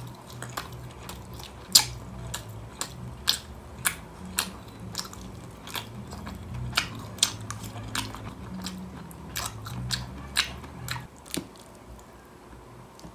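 Close-miked chewing of stir-fried beef and vegetables, with sharp wet mouth clicks and smacks about once or twice a second. The loudest comes about two seconds in, and the chewing eases off near the end.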